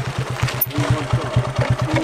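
Motorcycle engine running slowly close by, with an even low beat of about ten pulses a second.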